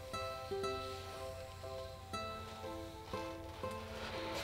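Quiet background music: a gentle plucked-string tune, its notes changing about every half second.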